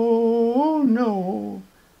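A man singing unaccompanied, holding a long sung 'oh' that wavers and bends in pitch partway through and stops shortly before the next line.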